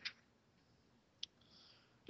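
Near silence with two short, faint clicks: one right at the start and one about a second later.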